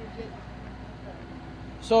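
Outdoor background of faint, distant voices over a steady low hum. A man starts speaking close to the microphone just before the end.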